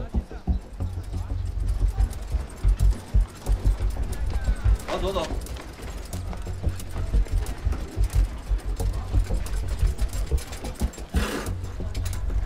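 Dramatic background music with a pulsing low drum under street bustle full of short clicks and knocks. A voice calls out briefly about five seconds in and again near the end.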